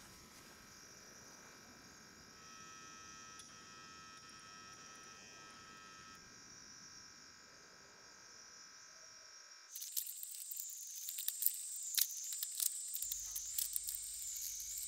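Night insects: a faint, steady high chirring with several held tones. About ten seconds in, a louder, wavering high insect whine takes over, with crackling clicks.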